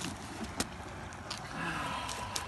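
Steady outdoor background noise with a single sharp click a little over half a second in and a few fainter ticks later.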